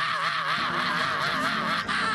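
A man's voice holding one long, high holler into a microphone, its pitch wavering up and down about four times a second, breaking off just before the end.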